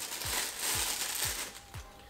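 Plastic packaging crinkling and rustling as it is handled, fading out about a second and a half in, over quiet background music with a steady beat.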